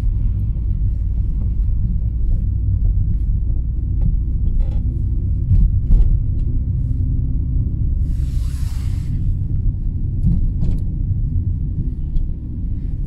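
Road noise inside a moving car's cabin: a steady low rumble of engine and tyres on a wet, slushy road, with a few small knocks. About eight seconds in comes a brief hissing swish.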